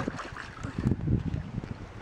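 Water sloshing and splashing around a child's legs as she steps about in a shallow inflatable pool, in uneven bursts.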